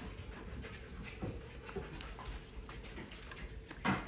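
A picture book's paper page being turned by hand: soft rustling and handling of the page, with a sharper flap as it settles near the end, over a faint steady hum.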